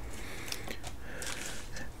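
Faint rustle and light clicks of a foil Pokémon booster pack being picked up from a stack and handled.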